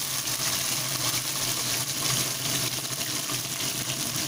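Pointed gourd and potato wedges sizzling in hot oil in a wok: a steady hiss over a low, even hum.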